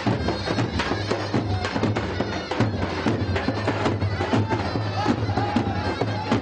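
Turkish folk music from a davul bass drum struck in a quick repeating pattern, with a zurna, a reed pipe, playing a bending melody over it.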